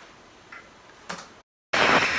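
A few faint clicks, then a moment of dead silence broken by a sudden loud burst of digital glitch noise near the end: a transition sound effect.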